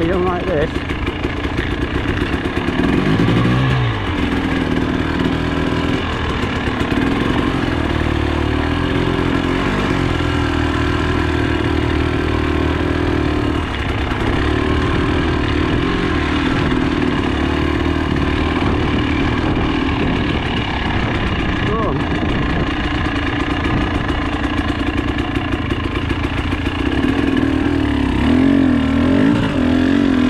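Trail motorcycle engine running under way. Its pitch drops sharply a few seconds in, holds fairly steady for most of the stretch, and wavers up and down with the throttle near the end.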